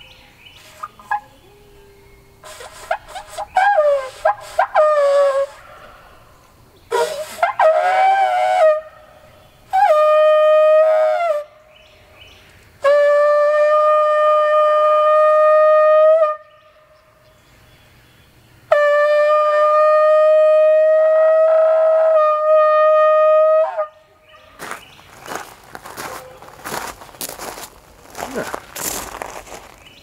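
A long spiral shofar blown in a series of blasts. The first few are short and wavering in pitch, then two long steady blasts hold one note for several seconds each. Near the end there is a rapid patter of short noisy sounds.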